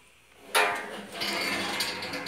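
Gas stove oven door being moved on its hinges: a sudden clatter about half a second in, then a steady metallic scraping for over a second.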